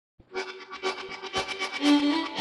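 Instrumental intro of a 1960s country string-band record, beginning after a brief silence with quick repeated notes, heard in Capitol's Duophonic fake stereo with its added echo.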